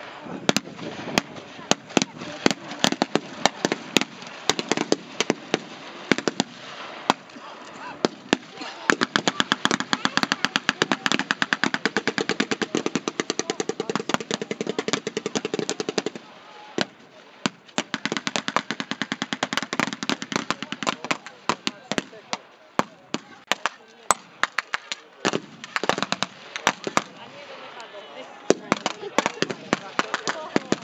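Blank gunfire at a battle reenactment: ragged, scattered rifle shots throughout. From about nine seconds in there is a long, even burst of rapid machine-gun fire that cuts off suddenly around sixteen seconds.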